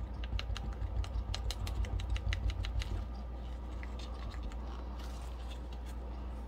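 Two wooden craft sticks ticking and scraping against a small mixing cup as epoxy resin is stirred with pigment. Quick, irregular clicks, close together for about three seconds, then sparser, over a low steady hum.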